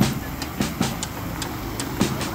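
Heavy truck and road traffic running: a steady, even rumble.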